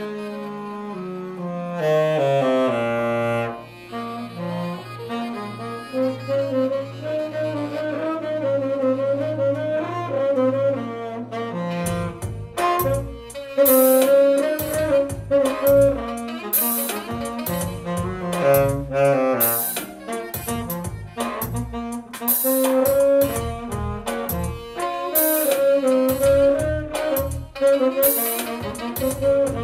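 Saxophone playing a jazz melody along with backing music; a steady drum beat comes in about twelve seconds in.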